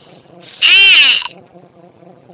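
A girl's loud, high-pitched silly vocal squeal, a single call of about half a second whose pitch rises and then falls.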